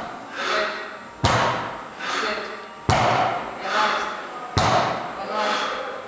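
A barbell loaded with rubber bumper plates hits a rubber gym floor at each deadlift rep: three sharp thuds about 1.7 seconds apart.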